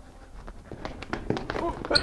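Running footsteps of sneakers on a hard, shiny floor, the steps coming quicker and louder toward the end, as a voice starts up right at the close.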